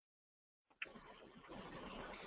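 Near silence: dead silence at first, then a faint click about two-thirds of a second in and low background hiss that slowly grows louder.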